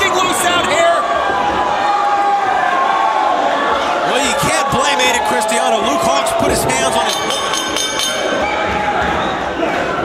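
Shouting voices from the arena crowd and the ring, with a few sharp thuds of bodies hitting the wrestling ring canvas.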